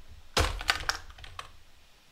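Computer keyboard keystrokes: a quick run of several sharp key clicks starting about half a second in and tapering off within about a second.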